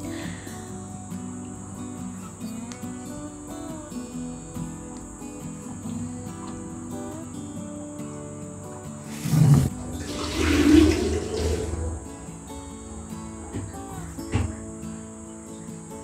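Background music with water sloshing and swishing as hands stir fresh lotus seeds in a bowl of water to wash them. The splashing is loudest about nine to twelve seconds in.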